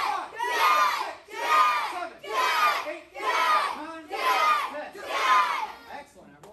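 A class of karate students, mostly children, shouting together in unison in time with their punches, about one loud shout a second, seven in all.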